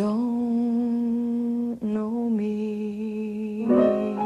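A woman singing slow, long held notes in a low register, with a short break about two seconds in. A piano chord comes in just before the end.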